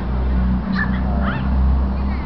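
A few short, high-pitched animal cries, like yelps or whimpers, rise and fall in pitch about a second in. Under them runs a steady low rumble.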